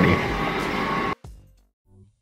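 Background music that cuts off suddenly about a second in, leaving near silence.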